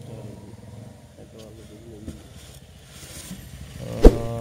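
An engine running steadily in the background as a low hum, with faint voices talking about a second in.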